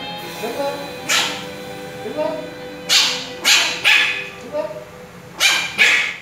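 Maltese puppy giving about six short, sharp barks at irregular intervals while begging for food held above it, with background music running underneath.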